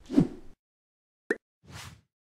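Animated-graphics sound effects: a plop that falls in pitch, a short sharp pop a little after a second in, then a brief whoosh near the end.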